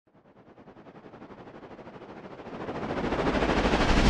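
Electronic intro riser: a rapid, evenly pulsing sound of about ten pulses a second, fading in from silence and growing steadily louder and brighter over four seconds.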